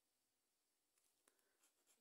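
Near silence, with a few faint ticks in the second half from a scratcher tool touching a lottery scratch card.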